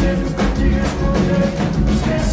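A live sertanejo band playing, with a drum kit keeping a steady beat under guitars and held notes.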